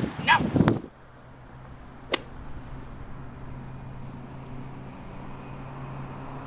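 Brief shouting at the start, then a steady low hum with one sharp smack about two seconds in.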